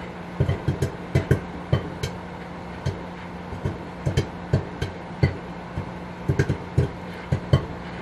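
Popcorn kernels popping irregularly inside a silicone microwave popcorn maker as they start to pop: about twenty sharp pops, some in quick clusters, over the steady hum of the running microwave.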